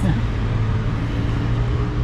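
Steady street traffic noise with a continuous low engine hum.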